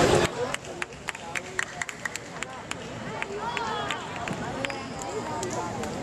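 Badminton doubles rally: a quick, irregular run of sharp clicks from rackets striking the shuttlecock and players' shoes on the court, with a few short shoe squeaks midway.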